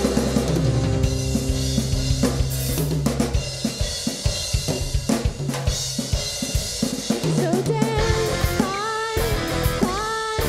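Rock band playing live on electric guitar, bass guitar and drum kit. Long low bass notes drop out about three seconds in, leaving mostly the drum kit, and pitched guitar lines come back in near the end.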